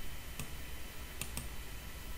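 Three faint, sharp clicks from computer input: one about half a second in, then a quick pair just past a second, over a low steady hum.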